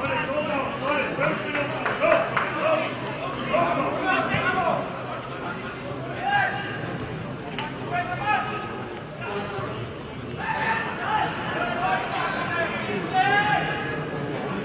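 People's voices talking or calling out, with no other sound standing out.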